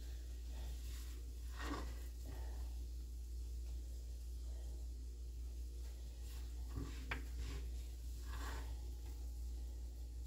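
Chopped green onion being sprinkled by hand over a cheese-topped dish in a cast iron skillet: a few faint soft handling sounds over a steady low hum, with a small click about seven seconds in.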